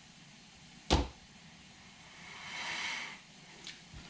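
A single sharp thump about a second in, then a soft hiss that swells and fades.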